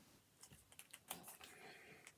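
Near silence with a few faint light clicks and a soft rustle from comic books being handled as one is swapped for the next.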